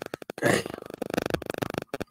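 A man's short non-speech vocal sound: one loud, breathy burst about half a second in, then fainter sounds.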